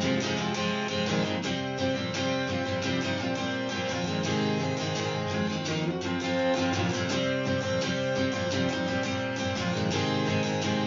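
Acoustic guitar strummed in a steady rhythm, chords ringing with no singing: the instrumental intro of a pop-punk song.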